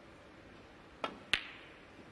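Snooker cue tip striking the cue ball, then the cue ball hitting a red about a third of a second later with a louder, sharper click.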